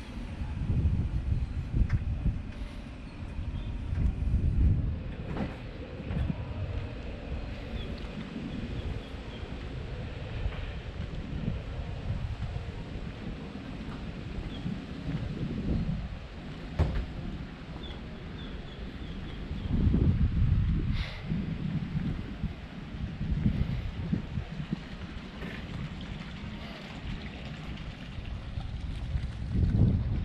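Wind buffeting the camera microphone in uneven gusts, a low rumble that swells and fades every second or two.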